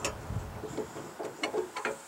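A few faint metallic clicks from a trailer hitch pin and its retaining clip being handled in the receiver, one at the start and a small cluster in the second half.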